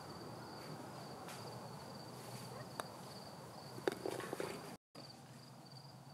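Faint, steady trilling of insects: a high, slightly pulsing note that runs on throughout. A single light click sounds near the middle, and the sound cuts out for a moment near the end.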